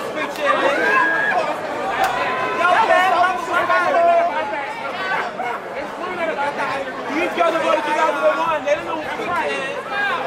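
Crowd chatter in a gymnasium: many people talking and calling out at once, overlapping voices with no single speaker clear.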